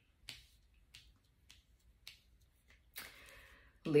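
Tarot cards being handled on a table: a few faint, short clicks as cards are flicked and set down, then a brief soft rustle near the end.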